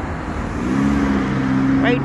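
City street traffic with cars driving past, and a steady low droning tone from a vehicle coming in about half a second in and holding.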